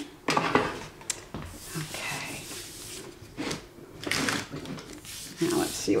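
A metal tray slid across a cutting mat with a few light knocks, then paper rustling and being handled on a wooden board, with a single spoken word near the end.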